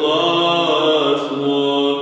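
Male voices singing Byzantine chant, a slowly moving melody over a steady held low note.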